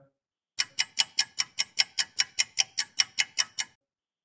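Clock-like ticking, about five even, sharp ticks a second. It starts about half a second in and stops shortly before the end.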